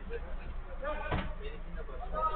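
Players' voices calling across the pitch, with one sharp thud about a second in from a football being struck.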